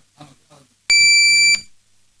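A single loud electronic beep about a second in: one steady high tone, lasting about two-thirds of a second, that cuts off sharply.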